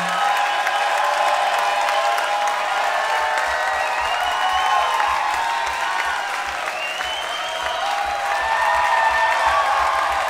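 Concert audience applauding and cheering at the end of a song, with scattered whoops over steady clapping.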